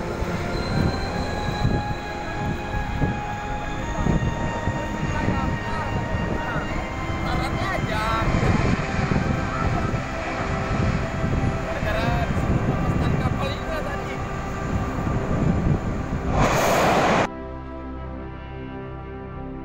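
Outdoor noise at a large ship fire: a continuous rough low rumble with faint indistinct voices and a few steady tones under it. Near the end, a loud rushing burst lasting about a second breaks in and then cuts off abruptly.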